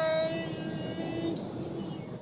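A voice holding one long sung note at a steady pitch, fading out a little past halfway, over the hiss of road noise inside a moving car.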